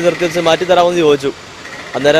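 A man speaking Malayalam close to the microphone, with a brief pause about two-thirds of the way through.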